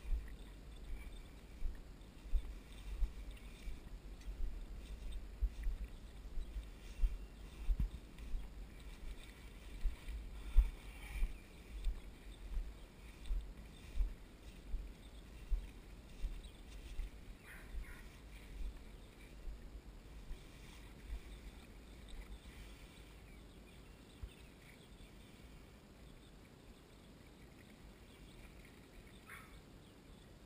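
Rhythmic low thumps, about one and a half a second, with faint rustling: handling noise of a camera bouncing along at grass height through tall grass. The thumps fade away after about two-thirds of the way through.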